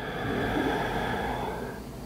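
A woman's slow, deep audible breath, swelling and then fading away near the end.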